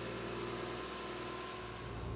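Forestry forwarder's diesel engine and hydraulics running in a steady hum while its crane swings a grapple-load of logs onto the bunk.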